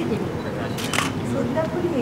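Camera shutter clicking twice in quick succession about a second in, over a person speaking.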